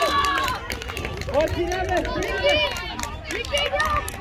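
Shouts and talk from several players and spectators around a football pitch, unclear as words, over a steady low rumble.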